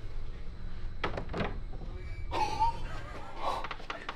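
A door being handled and pulled open, with a few knocks about a second in and a short creak a little past halfway, over a steady low hum that stops as the door opens.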